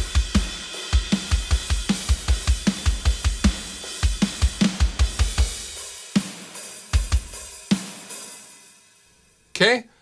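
Sampled metal drum kit from the Solemn Tones Mjolnir Drums plugin playing a programmed MIDI part: rapid kick drum under snare, hi-hat and cymbals, with EQ, kick compression and clipping on the drum bus. The pattern stops about six seconds in with three last spaced hits, and a cymbal rings out and fades.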